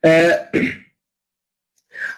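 A man clearing his throat: a short two-part voiced ahem in the first second.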